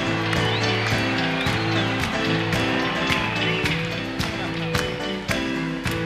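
Live band playing a backing vamp: held keyboard chords over a low bass note, with a steady drum beat of about two hits a second.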